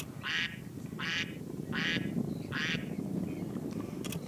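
A bird calling four times in an even series, short harsh calls about three-quarters of a second apart.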